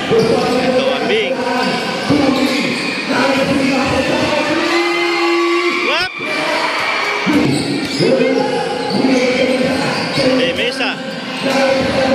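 A basketball bouncing on a concrete court as it is dribbled during play, with spectators' voices and shouts over it. There is a sharp knock about six seconds in.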